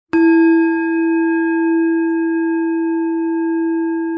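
A single struck, bell-like chime: one long ringing tone that starts sharply just after the start and holds, slowly easing off, with several bright overtones above its main pitch.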